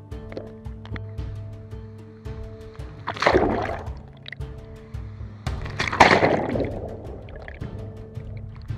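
Churning seawater heard through a submerged microphone, rushing up loudly in two surges about three and six seconds in, over steady background music.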